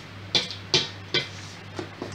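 A metal whisk stirring thick cake batter in a stainless steel mixing bowl, with four quick scraping knocks against the bowl about half a second apart.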